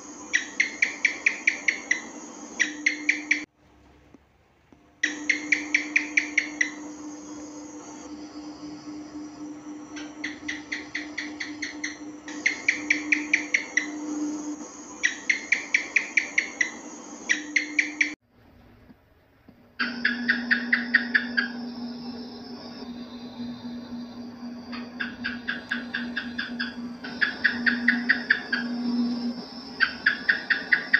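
House gecko (cicak) calling: repeated runs of about ten quick, sharp chirps, each run lasting about a second and a half, over a steady low hum. The sound cuts out briefly about 4 seconds in and again around 18 seconds in.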